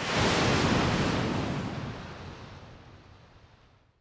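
A single whoosh sound effect, like rushing wind or surf, marking a title-card transition. It swells quickly, then fades away over about three seconds.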